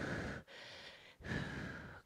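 A woman breathing hard through the effort of holding an arm balance: three audible breaths in and out, each under a second, with short gaps between.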